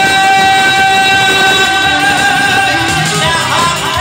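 Male singer with a microphone over amplified keyboard accompaniment. A long held note runs through the first half, then the voice moves in ornamented turns near the end.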